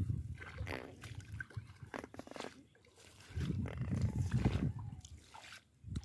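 Water sloshing and swishing as a person wades knee-deep through shallow water, pushing a bamboo-framed push net. Irregular low rumbling bursts run through it, loudest a little past halfway.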